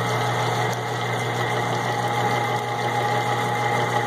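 Mount Baker ore-milling system running steadily: a constant motor hum with the shaker table vibrating and water washing the ground ore slurry across its deck.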